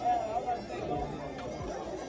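A woman's voice talking, with a murmur of background chatter behind it.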